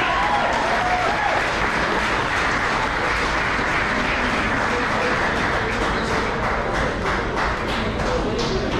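Spectators applauding steadily, with a few voices over it in the first second.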